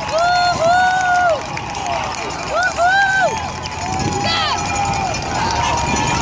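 Roadside crowd shouting and whooping in long drawn-out calls, several in a row, as the team cars drive past up the climb.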